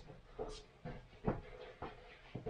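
A few faint, short clicks from a small plastic BetaFPV drone being handled and turned over in the hands, over quiet room tone.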